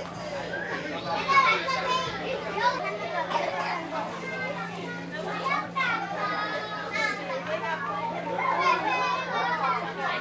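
A group of young children chattering and calling out over one another, mixed with adult talk, with a steady low hum underneath.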